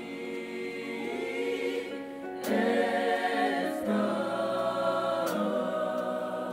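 Mixed gospel choir singing held chords in harmony, swelling louder about two and a half seconds in as the chord changes.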